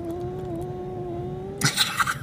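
A cat's long, low yowl, sliding up at the start and then held at one pitch for most of two seconds, breaking into a short hiss near the end: a cornered, defensive cat.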